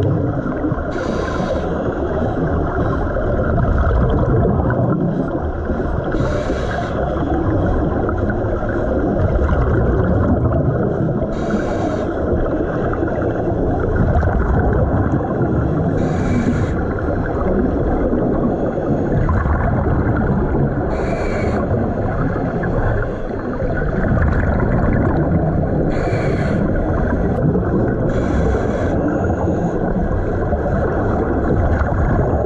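Underwater recording on a diver's camera: a steady muffled rush of water, broken about every five seconds by a short hissing burst, typical of a scuba regulator's breath cycle.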